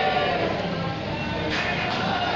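Devotional aarti singing by a group of voices, a held, wavering note carrying through, with a brighter, noisier layer joining about a second and a half in.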